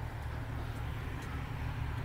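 A car engine idling: a steady low hum with no revving.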